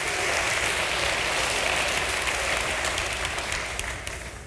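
A large congregation applauding in a big hall. The clapping builds, holds, then dies away near the end.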